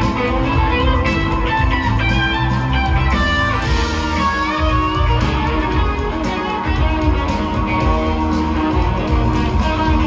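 Live rock band playing an instrumental passage: an electric guitar plays shifting lead lines over bass and drums. It is heard from far back in the audience of a large hall.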